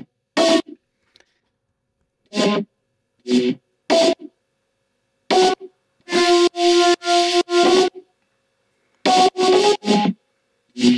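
Distorted Serum synth lead played alone, in short, detached notes with silences between them: single notes, then a quick run of four about six seconds in, and three more near the end.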